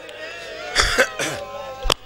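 A man's cough into the microphone about a second in, over faint drawn-out wailing voices, with one sharp slap just before the end.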